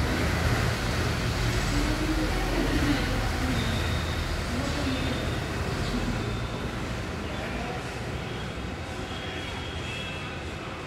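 Steady low rumble of vehicle traffic with faint, indistinct voices, easing off slightly in the later part.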